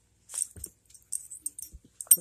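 A few short, faint metallic jingles: a small dog's collar tags clinking as she moves about during her tricks.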